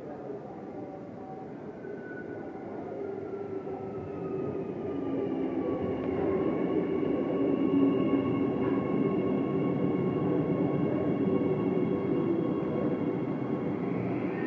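Electric train arriving alongside the platform: rumble from the wheels that grows louder from about four seconds in, with a thin motor whine falling in pitch as the train slows, then a steady rolling rumble with a high, even whine as the cars move past.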